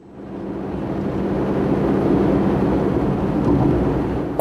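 A car on the move: a steady low engine hum under road and tyre noise, fading in over the first second or two and then holding level.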